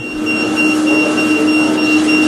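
MBST magnetic resonance therapy machine running: a steady low hum with a thin, high whine above it over an even hiss.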